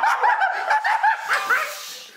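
People laughing, a fast run of short laughs that turns breathy and fades near the end.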